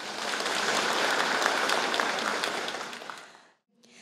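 Audience applauding, swelling and then fading out about three and a half seconds in.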